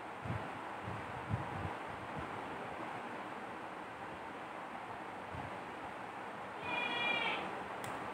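Steady background hiss with a few soft low thumps in the first two seconds, then a brief high-pitched call lasting under a second near the end, followed by a single click.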